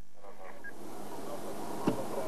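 Steady outdoor hiss fading in about a quarter second in, with a few faint wavering calls in it, and a single sharp click near the end.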